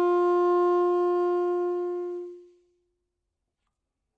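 Saxophone holding the final long note of the piece, one steady tone that fades away about two and a half seconds in.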